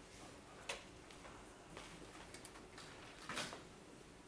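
Faint, scattered small clicks and taps of desk handling in a quiet room, with a short, louder rustle about three and a half seconds in.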